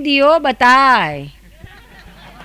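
A woman's voice speaking into a microphone with long drawn-out vowels for about a second and a half, then stopping, leaving only faint room noise.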